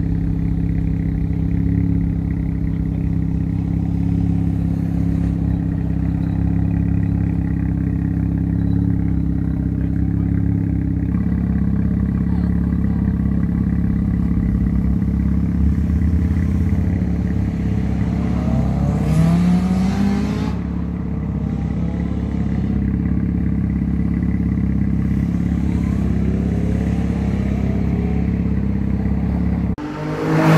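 Car engines idling at close range, with a car accelerating away in a rising engine note about two-thirds of the way through and another a few seconds later.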